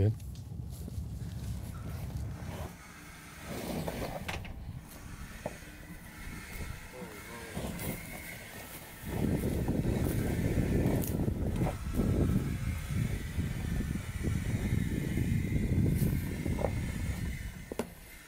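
Ford F-150 Lightning electric pickup crawling along an off-road dirt trail with low, steady tyre and cabin noise. About nine seconds in, a louder, rough, uneven rumble starts as the truck climbs a steep rocky slope.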